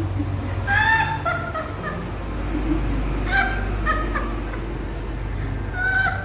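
A woman's high-pitched excited squeals in short bursts: about a second in, again around three to four seconds, and at the end, over a low steady hum.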